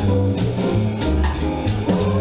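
Small jazz combo playing live: an upright double bass plucking a line of low notes under steady drum-kit cymbal strokes, with other instruments filling in the middle.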